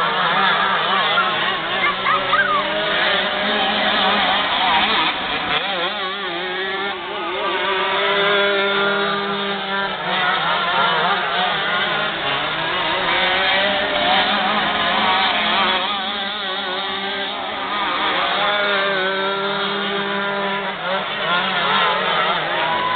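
Several 125cc two-stroke shifter cage kart engines racing, their notes rising and falling over one another as the karts accelerate down the straights and back off into the turns.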